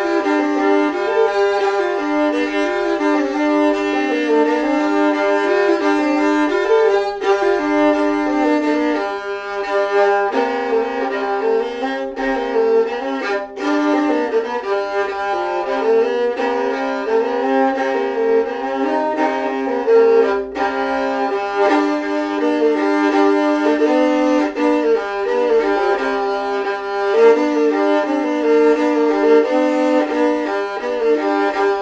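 Gudok, a three-string Russian bowed folk fiddle, being bowed: a melody on one string over a steady drone from the others.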